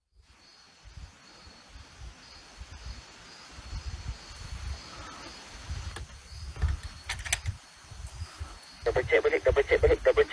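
Footsteps and phone handling thump irregularly as someone walks a paved path at night, under a faint steady chirring of insects. Near the end comes the loudest sound, a rapid stuttering run of about a dozen short pulses lasting about a second and a half.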